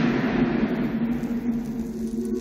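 Film sound effect: a loud rushing, rumbling noise over a low steady hum, its hiss slowly dying away.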